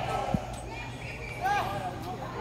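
A football being kicked on a grass pitch, one short dull thud about a third of a second in. A few short shouts follow near the end.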